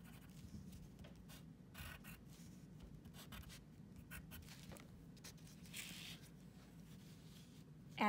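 Pencil drawing on paper: faint, short scratching strokes as the point traces small outlines, pressed down hard.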